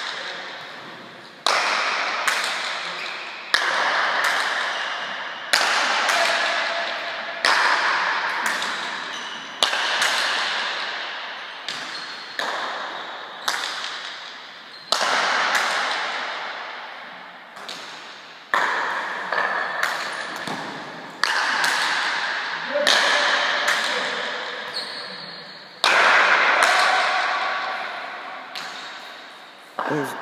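A rally of paleta cuir (Basque pelota played with a leather ball and wooden bats): the ball cracks off the wooden paletas and the front wall about every one and a half to two seconds. Each hit rings away in the long echo of a large indoor fronton.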